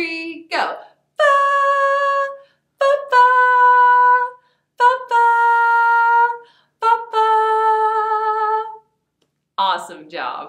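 A woman singing a short melody unaccompanied: four long held notes, each a little lower than the one before, so the tune steps downward.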